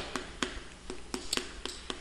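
Chalk on a blackboard: light, sharp taps, several in quick succession, as each stroke of handwritten Korean characters is put down.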